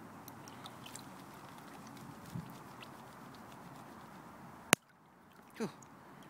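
Water sloshing as a plastic gold pan is worked underwater in a tub, with faint clicks of gravel. Near the end a single sharp tap, a berry falling from the tree and hitting the phone, after which the sound drops away.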